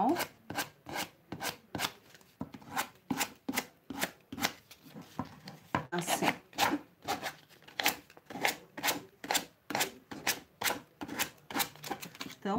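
Sandpaper rubbed in quick back-and-forth strokes along the edge of a wooden plaque, sanding away the overhanging thin decoupage paper. The strokes come about two or three a second, with short pauses between runs.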